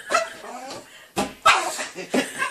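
Shih tzu barking at a large bouncing ball: a few short, sharp barks, the loudest about one and a half seconds in.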